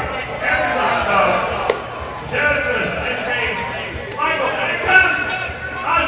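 Indistinct voices talking, with a single sharp click a little under two seconds in.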